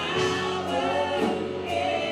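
A live worship band: several voices singing a gospel song together over electric guitars and drums, with cymbal strokes keeping a steady beat.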